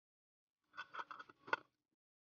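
Metal twist-off lid being put on and screwed down onto a glass jar: a quick run of clicks and scrapes of the lid on the jar's threads for about a second, ending in one sharper click.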